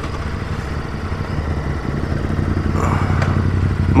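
Ducati Multistrada V2S's 937 cc L-twin engine idling steadily. Another motorcycle comes in near the end and the sound gets louder.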